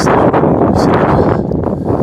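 Wind buffeting the microphone: a loud, irregular rumbling noise.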